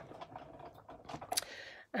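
Faint clicks and light rustles of hands handling a Big Shot die-cutting machine's plastic cutting plates, cardstock and paper, with one sharper click about two-thirds of the way through.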